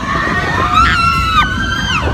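Overlapping long, high screams of riders on an amusement ride, starting about half a second in, with one voice breaking off partway and another held to the end, over a low rumbling noise.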